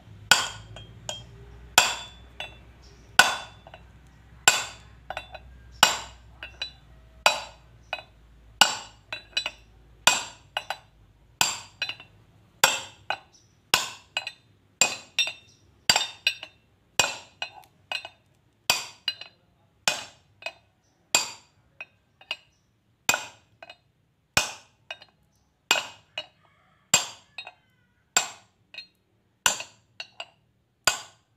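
Hammer striking a steel drift bar, about one and a half ringing metallic blows a second with lighter taps between, tapping a new small pinion bearing cup into a truck differential's cast pinion housing. The blows are kept light and even so the cup seats square without being scratched.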